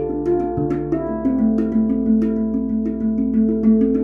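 HAPI steel handpan tuned to an El Capitan scale derived from D minor, played with the hands: a quick run of strikes on its tone fields, about three or four a second, each note ringing on beneath the next.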